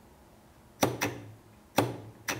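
Pop bumper solenoid firing each time its switch line is shorted with a jumper wire, every hit a 100-millisecond coil pulse. Sharp clacks as the coil yanks the bumper ring down: two close together a bit under a second in, and another near the end.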